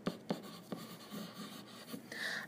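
Pen writing on lined notebook paper: a run of faint, short scratching strokes as a word is written out.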